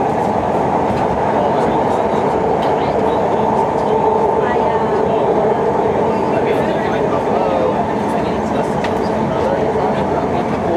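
A BART train car running at speed, heard from inside: a steady, loud rail noise with a constant two-note hum.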